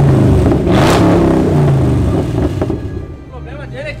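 Chevrolet Camaro V8 engine revved through its exhaust: the revs fall away from one blip, rise again in a second blip about a second in, then drop back to idle by near the end.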